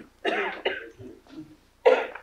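A person coughing and clearing their throat, with the sharpest and loudest cough near the end.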